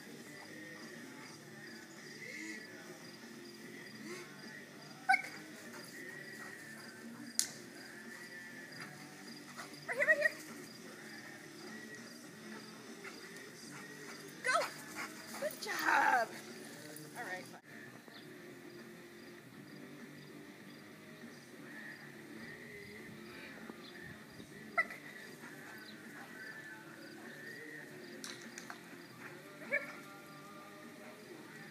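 A dog's brief vocal sounds during training play, the loudest a call falling in pitch about halfway through, with a few short sharp sounds scattered before it, over a steady outdoor background.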